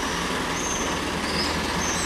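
Steady low rumble of vehicle engines at low speed in a narrow street: a butane-cylinder delivery truck stopped while a van drives slowly past it.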